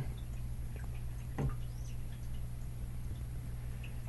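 Faint clicks and handling of a small metal airsoft hop-up unit, with one sharper click about a second and a half in, over a steady low hum.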